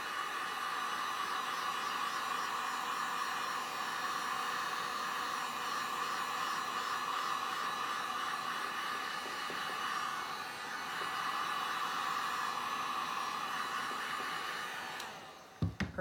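Handheld heat gun running steadily, a constant rush of blown air with a hum, blowing over wet epoxy resin to blend the colours. It switches off about a second before the end.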